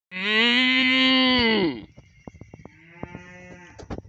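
A loud, drawn-out moo that drops in pitch as it ends, followed about three seconds in by a fainter, shorter moo.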